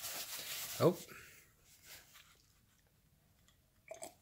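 A paper towel rustling in the hands as it is unfolded, for about the first second and a half, then near quiet.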